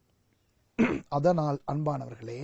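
A man's voice speaking, starting a little under a second in after a short silence.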